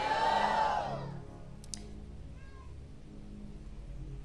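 A congregation singing a drawn-out sung response together, many voices gliding in pitch, then fading out about a second in. After that there is only a low steady hum.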